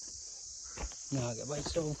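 A man's voice speaking briefly, starting a little after a second in, over a steady high-pitched hiss.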